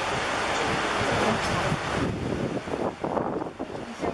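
Wind buffeting the microphone: a steady rushing hiss for about two seconds, then uneven low rumbling gusts.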